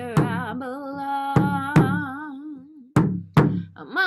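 A woman sings one long wavering note, accompanying herself on a painted frame hand drum struck with a beater in pairs of beats. The voice stops a little past halfway while the drum keeps on.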